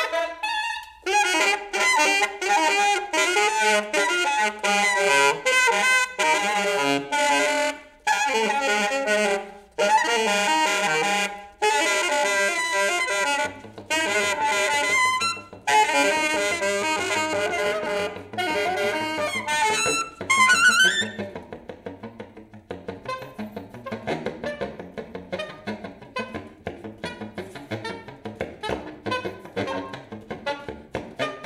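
A saxophone quartet of soprano, alto, tenor and baritone saxophones playing free-improvised jazz together. Loud massed phrases are broken by short pauses. A rising run comes about twenty seconds in, and after it the playing drops to quieter, rapid, busy figures.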